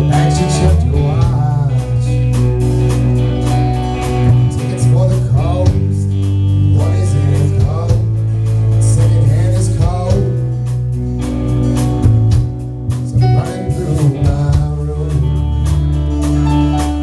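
Live rock band playing a song through a bar PA: electric guitars, bass, drums and keyboard, with a male lead vocal singing lines at intervals.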